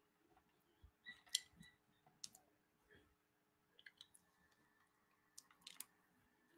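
Near silence at a close microphone: a few faint, scattered mouth clicks over a low steady hum.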